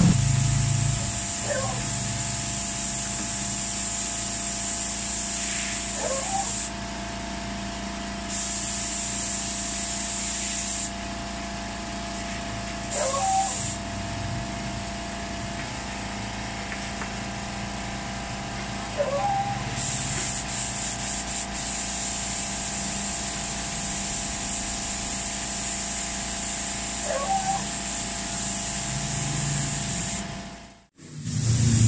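Air spray gun hissing as it lays a light mist coat of epoxy primer on a motorcycle fairing, the airflow stopping and starting several times as the trigger is released and pulled again. A steady low hum runs underneath.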